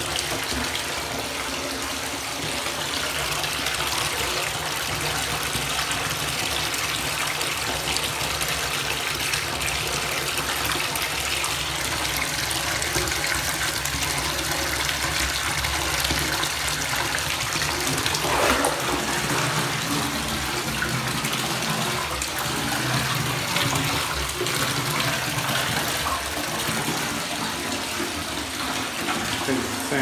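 Bathtub tap running steadily, a continuous rush of water pouring into the bath.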